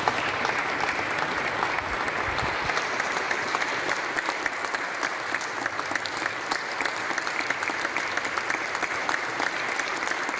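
Audience applauding steadily, a dense even patter of many hands clapping.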